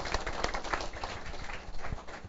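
Audience applauding, many hands clapping at once with dense overlapping claps that thin slightly toward the end.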